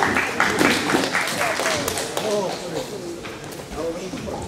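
Scattered audience clapping over crowd chatter and men's voices in a large hall, thinning out after the first couple of seconds.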